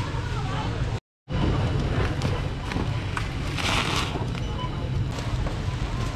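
Checkout-lane ambience in a busy warehouse store: a steady low hum under faint background chatter, with scattered clicks and a short rustle near the middle as goods are handled on the conveyor belt. The sound cuts out completely for a moment about a second in.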